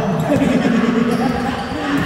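A basketball being dribbled on a hardwood gym floor, a few bounces, under a man's drawn-out voice.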